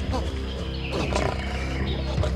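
A lion growling at close range, with a man's frightened cries, over a dramatic music score.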